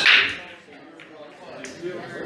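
Pool break shot: the cue ball smashes into the racked balls with one loud, sharp crack that rings off quickly, followed by a few faint clicks of balls knocking together as they scatter.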